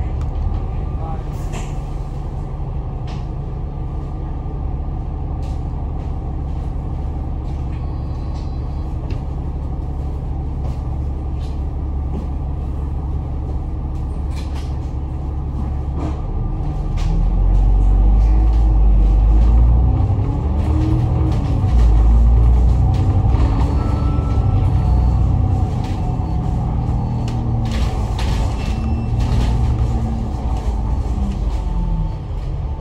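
Double-decker bus engine (Alexander Dennis Enviro500 MMC) idling at a standstill, then louder from about halfway through as the bus pulls away and accelerates, its pitch rising and falling several times through the gears.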